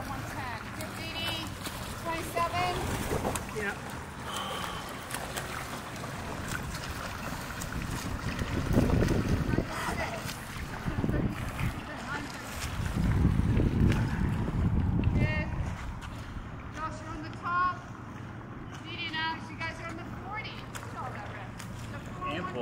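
Swimming-pool water splashing and churning as swimmers do freestyle laps, with faint voices in the background. Two louder rushes of noise come about 9 and 13 seconds in.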